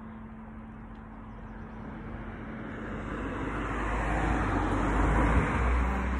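A car crossing the bridge overhead: its tyre and engine noise and a deep rumble build up over a few seconds, loudest near the end.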